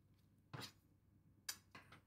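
Near silence, broken by a faint short scrape about half a second in and a brief click about a second and a half in, from a handheld garlic press being worked over a stainless steel bowl.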